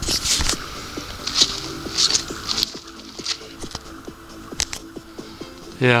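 Footsteps and rustling through dry leaves and brush along a creek bed: a handful of short, irregular crunches, over a faint, steady, rhythmic low pulsing.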